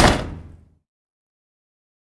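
The closing hit of an electronic dance track rings out and fades away in under a second, then digital silence.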